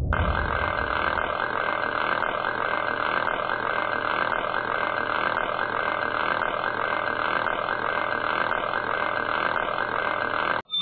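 Sound effect of meshing gears turning: a steady mechanical whir with a faint repeating pulse.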